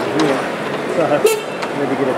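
Indistinct background voices of people talking, with one brief sharp noise a little over a second in.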